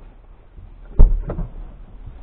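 Two dull knocks about a third of a second apart, the first the louder, heard inside a parked car's cabin over a low background hum.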